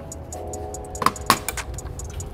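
Sharp plastic clicks and knocks as a black kidney grille is worked into place in a BMW G20's front bumper, two of them close together about a second in. Steady background music plays underneath.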